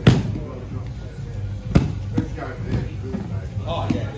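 Hands and feet slapping the foam floor mats: a sharp thud right at the start and another a little under two seconds in, with a few lighter ones after.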